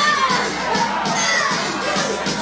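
A packed party crowd shouting and singing along over loud club music with a steady beat.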